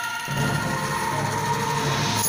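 Angklung ensemble playing: many bamboo angklung shaken in a continuous rattling tremolo that holds sustained chords over low bass notes, moving to a new chord about a quarter second in.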